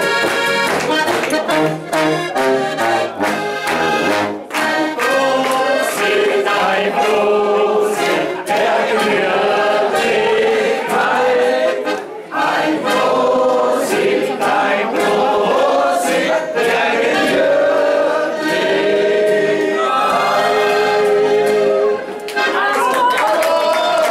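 Live folk band music led by an accordion, with voices singing along over a steady beat.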